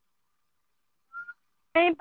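Dead silence on a live call line, broken about a second in by one short high tone, then a woman's voice starts speaking near the end.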